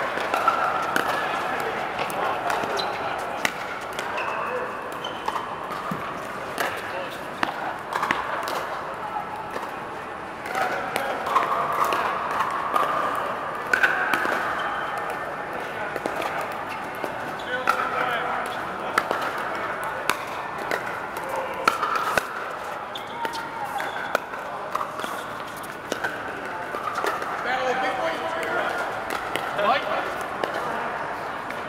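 Pickleball paddles hitting plastic balls, sharp pops at irregular intervals from several courts, over a steady background babble of many players' voices.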